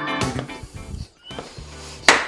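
Background music fades out over the first second. Then a bicycle floor pump is worked, with faint clicks and a short squeak, as it inflates a tubeless mountain-bike tyre to seat its bead.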